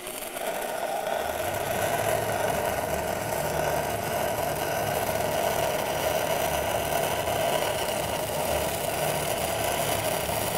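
Stick (SMAW) welding arc from a 3/32-inch E6010 electrode run at about 60 amps on 2-inch Schedule 80 carbon steel pipe, crackling steadily through a root pass.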